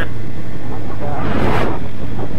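2005 Suzuki GSX-R1000 inline-four with a full Yoshimura exhaust system running steadily while cruising, mixed with wind rush that swells for a moment around the middle.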